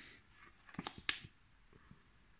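Oracle cards handled in the hands: a few short, soft clicks about a second in as a card is drawn from the deck and turned to the front.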